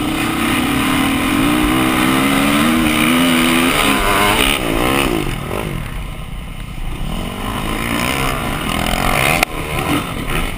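Dirt bike engine revving hard as it accelerates up the track. About four seconds in, the steady pitch breaks and wavers as a gear is missed, then the engine settles back to pulling. A single sharp knock comes near the end.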